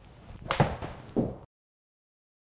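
A 7-iron striking a golf ball off a hitting mat with a sharp crack about half a second in, followed almost at once by the ball hitting the simulator's impact screen. A softer knock comes about half a second later, then the sound cuts off abruptly.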